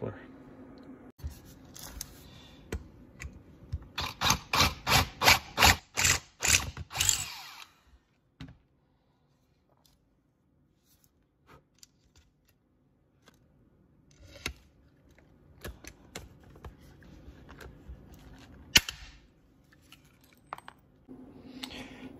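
Hand pop-rivet tool setting new rivets in an aluminium motorcycle silencer: a run of about eight quick strokes a few seconds in, then scattered clicks and taps, and one sharp snap near the end as a rivet sets.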